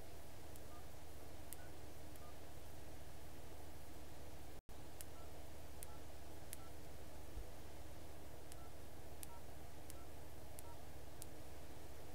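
Phone keypad being dialed: about ten short, faint touch-tone beeps with light key clicks, spaced a little under a second apart, over a steady hum. The sound cuts out for an instant partway through.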